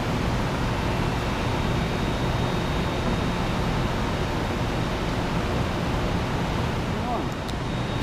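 Steady air-handling noise in a large data hall: computer room air conditioning (CRAC) units running, an even rush with a faint steady high tone over it.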